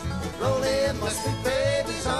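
Bluegrass band playing in a steady two-beat rhythm: upright bass, banjo, mandolin, fiddle and acoustic guitar together, with gliding melody notes over the plucked strings.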